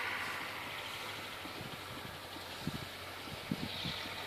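An engine idling steadily in the background, a low even hum, with a few faint soft thumps in the second half.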